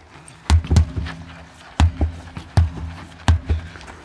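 Sledgehammers striking a large rubber tractor tyre: about six heavy, dull thuds at uneven intervals in four seconds.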